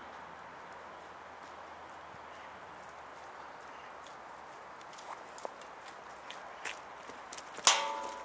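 Footsteps on snowy concrete steps, starting about five seconds in as scattered sharp scuffs and taps, with one loud sharp knock near the end that rings briefly. A faint steady hiss lies under the first half.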